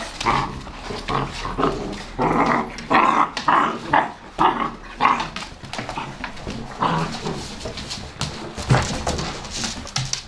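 Eight-week-old puppies play-wrestling, giving a dense, irregular run of short growls and yaps.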